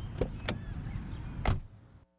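Low rumble of a car in motion, with a few sharp clicks and a louder thump about a second and a half in, then fading out.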